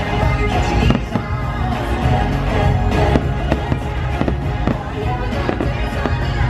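Aerial fireworks bursting in a rapid run of sharp bangs, over loud music.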